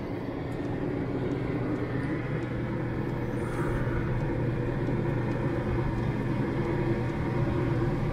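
15,000 BTU Dometic RV air conditioner running in cooling mode, a steady low hum that grows slightly louder over the seconds.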